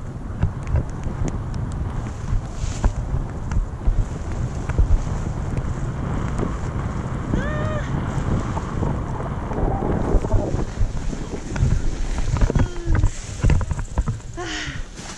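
Wind buffeting a microphone during a tandem paraglider flight, a steady low rumble. About halfway through, a person gives a short high-pitched cry.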